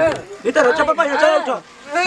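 High-pitched voices talking rapidly, with a short pause about three quarters of the way through.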